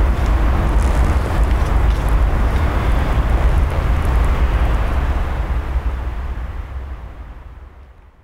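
Steady outdoor background noise with a strong low rumble, fading out over the last three seconds.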